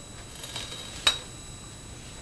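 A single light metallic click with a brief ringing tone about a second in, as a short length of copper pipe is handled and set down. The rest is quiet room tone.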